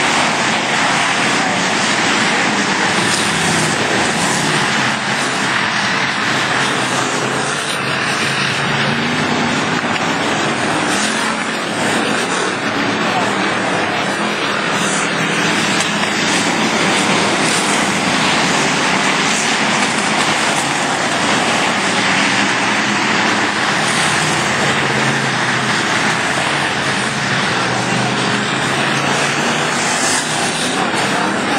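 Engines of several dirt-track stock cars racing as the pack circles the oval, a loud, steady drone that keeps on without a break.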